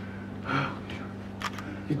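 A pause in a man's speech over a low, steady electrical hum: a short breath about half a second in and a single sharp click near the end, before he speaks again.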